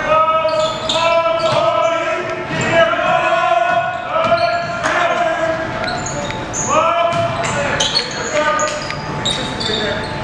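A basketball being dribbled on a hardwood gym floor during live play, with short high sneaker squeaks and voices calling out, echoing in the large gym.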